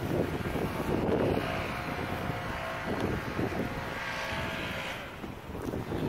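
A steady engine drone with wind rumbling on the microphone; a faint steady hum holds through the middle and the sound dips shortly before the end.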